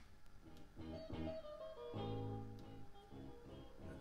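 Music played from a cassette tape in a Panasonic CQ-473 car cassette radio. It is fairly quiet, with pitched notes changing every fraction of a second and a fuller held chord about two seconds in.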